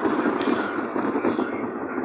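Steady road and tyre noise of a moving car heard from inside the cabin, with a short burst of hiss about half a second in.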